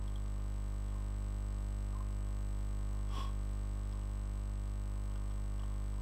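Steady low electrical mains hum from the recording chain, with a faint high whine over it, and a single mouse click about three seconds in.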